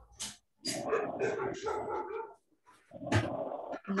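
Short, separate animal calls mixed with a person's voice, coming over a video-call microphone.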